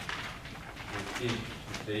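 A man's voice giving a low, drawn-out hesitation sound before a spoken syllable near the end, with a few short scratchy strokes in the first second.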